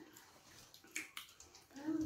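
Wet eating sounds from a meal of boiled yam in sauce eaten by hand: a few sharp wet clicks about a second in, then a short voiced hum near the end, the loudest sound.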